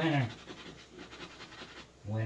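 Scratch-off lottery ticket being scratched by hand, a faint, fast scraping of the coating. A man's short vocal sound with falling pitch at the very start is louder than the scratching.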